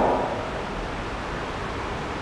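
A pause in a man's speech: steady background hiss of room and microphone noise, with the echo of his last word dying away in the first half second.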